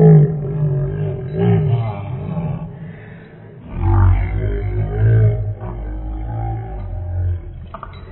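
A man making loud, low growling roars with his own voice, in several drawn-out bursts with a brief lull about three seconds in.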